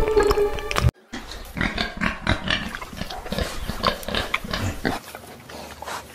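Background music cuts off about a second in, followed by a run of short, irregular pig grunts and snuffles.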